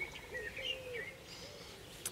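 Birds chirping and singing faintly: a few short whistled phrases in the first second, then quieter.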